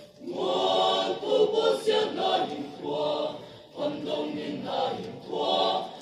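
Mixed choir of men and women singing under a conductor, a new phrase beginning just after a short break at the start, with a brief dip between phrases a little past halfway.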